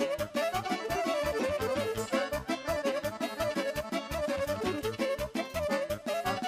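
Live Romanian folk band playing an instrumental dance tune: accordion and saxophone carry the melody over a fast, steady beat on a bass drum and cymbal.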